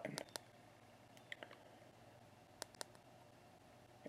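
Faint clicks of an iPhone's home button being double-pressed, in quick pairs, bringing up the Emergency Call option on the activation setup screen.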